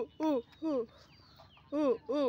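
A young chicken clucking in short, repeated calls as it is chased: two in quick succession, a pause, then another near the end.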